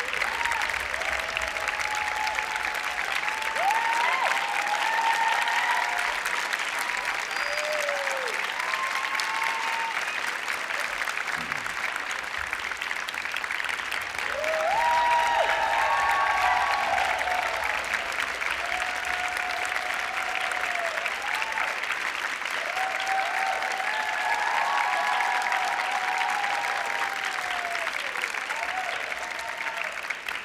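Audience applauding steadily, with cheering voices over the clapping, swelling about fifteen seconds in as the cast bows.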